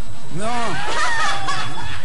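A woman's exaggerated, drawn-out cry of 'no', acted as in slow motion, then a second, higher voice crying out, over background music.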